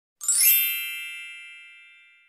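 A single bright chime sound effect for the title card, striking about a quarter second in and ringing out, fading away over about two seconds.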